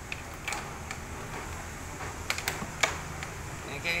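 A few light clicks and knocks of hard plastic pipe sections being handled and fitted together, over a steady low hum.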